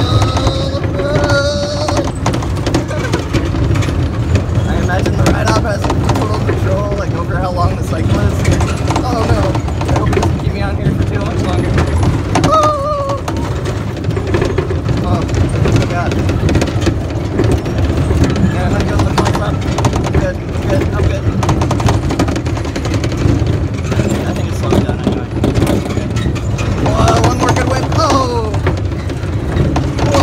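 Tilt-A-Whirl car spinning on its rolling platform: a steady, loud low rumble from the running ride, with a few voice-like shouts near the start, about halfway and near the end.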